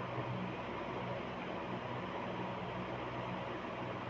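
Steady background hiss with a faint low hum: room tone.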